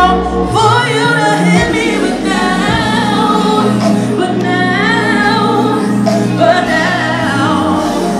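A woman singing into a handheld microphone over loud music with steady low bass notes, with other voices singing along with her.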